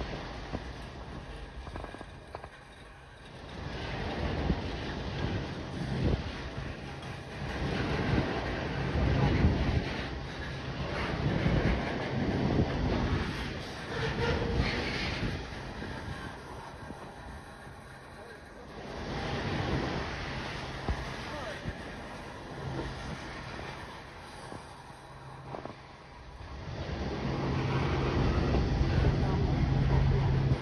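Covered hopper cars of a freight train rolling past, steel wheels rumbling on the rails in a continuous noise that swells and fades every few seconds, with wind on the microphone.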